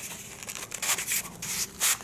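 Cardboard box's inner tray sliding out of its cardboard sleeve: a dry scraping rub in a few short strokes, the strongest near the end.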